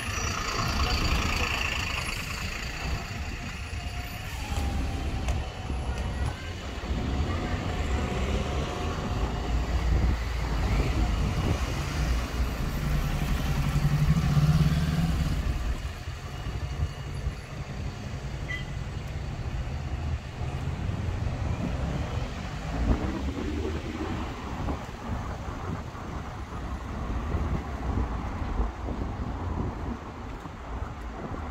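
Road traffic on a busy town street: a single-decker bus's diesel engine runs alongside at first, with cars passing. A steady engine hum swells to its loudest about halfway through, over a constant low rumble.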